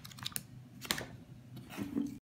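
Short, sharp clicks and paper rustles from handling a printed instruction booklet and the packaging in an open box: several light ones in the first half second, a stronger one about a second in, and another near the end.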